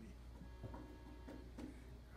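Quiet room tone: a steady low hum, with faint indistinct murmurs and a few small clicks.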